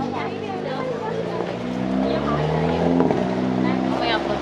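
A car driving slowly past, its engine hum stepping up in pitch as it pulls away, with faint voices of passers-by.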